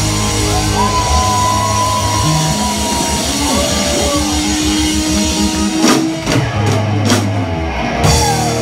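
Live rock band playing: distorted electric guitars with a held lead note over fast, even low chugging from bass and drums, with crash cymbals hit twice in the last few seconds.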